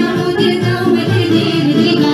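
A girl singing a folk song into a microphone, amplified, over an instrumental backing with a repeating bass line.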